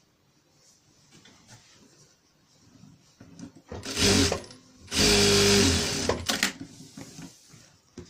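Electric sewing machine stitching a seam in two short runs: a brief one about four seconds in, then a longer one of about a second, each starting and stopping abruptly.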